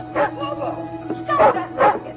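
A dog barking in short single barks, three in two seconds, as it jumps up on a man, over a steady music underscore.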